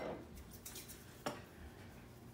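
Quiet kitchen handling: a spoon moving in a batter bowl, with one sharp knock of utensil against the bowl a little past halfway.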